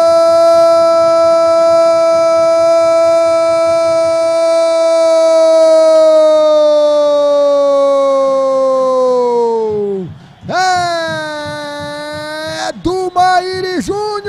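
A football commentator's drawn-out "Gol!" cry announcing a goal, one loud held note that sinks in pitch and breaks off about ten seconds in. A second, shorter held shout follows, then a few quick calls near the end.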